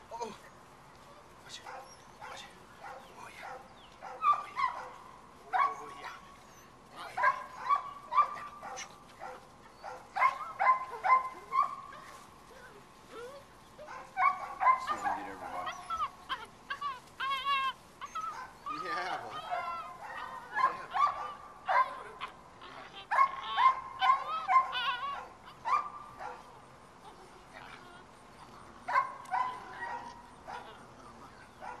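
Seven-week-old puppies yipping and barking in short, high-pitched bursts during tug play, with a stretch of higher wavering whines about halfway through.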